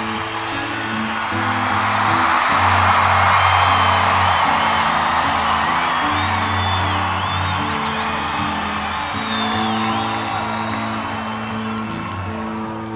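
Nylon-string acoustic-electric guitar playing a slow chord intro through a concert PA, with an audience cheering, whooping and whistling over it; the crowd noise swells a couple of seconds in and then eases.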